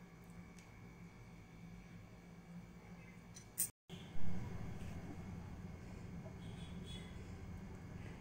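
Faint handling sounds of hands and a knife working potting soil in a plastic pot, over a steady low hum, with one brief sharp knock about four seconds in.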